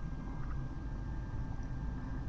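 Room tone: a steady low hum with faint background hiss and a thin, steady high tone, with no distinct sound events.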